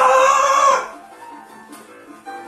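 A loud, drawn-out call that swoops up in pitch and holds for about a second before cutting off, over quiet background music.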